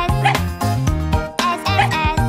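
Upbeat children's background music with a steady beat, over which a small dog's yipping comes in twice: at the start and again near the end.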